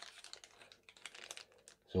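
Clear plastic bag around a packaged cable crinkling in the hand as it is picked up: faint, irregular crackles.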